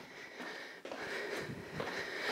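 A woman breathing while she exercises, with soft footfalls of side steps on a wooden floor.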